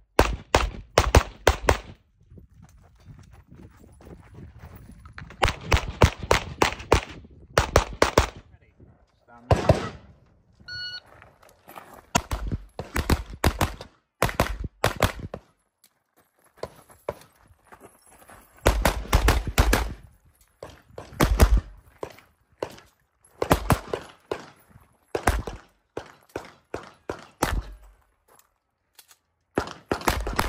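Handgun shots fired in quick strings of several rounds, with pauses of a second to a few seconds between strings as the shooter moves between positions. A short electronic beep sounds about eleven seconds in.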